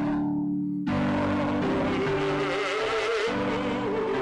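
Singing with church organ accompaniment: a voice with vibrato over held organ chords that change in steps. The singing breaks off for about half a second near the start while the organ holds, then a new phrase begins.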